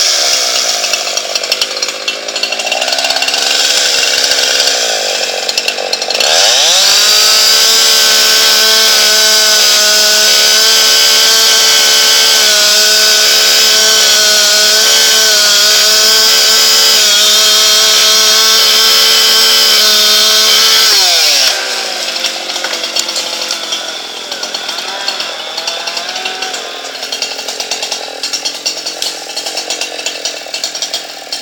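Gas chainsaw cutting through an ash trunk. It runs unevenly under load for the first few seconds, then revs up to a steady full-throttle whine as it cuts. About two-thirds of the way in the revs drop sharply, and it runs lower and rougher to the end.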